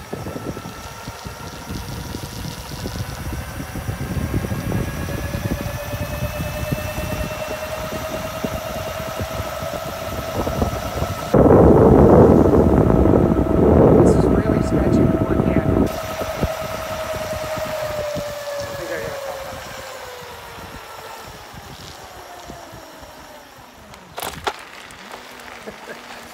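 Razor E300 electric scooter's 350-watt motor and chain drive whining under way. The steady whine climbs in pitch over the first few seconds, holds while the scooter rides, then sinks and fades as the scooter slows near the end. Heavy wind rumble on the microphone, loudest for about four seconds halfway through, and a couple of sharp clicks near the end.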